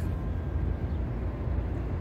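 Steady low outdoor rumble of city background noise mixed with wind on the phone's microphone.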